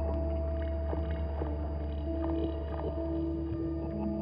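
Two guitars playing an improvised ambient duet: a steady low drone under long held notes that shift pitch every second or so, with a few soft plucked notes.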